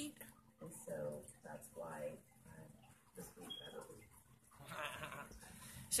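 A pet's quiet vocal sounds: several short pitched calls, with pauses between them.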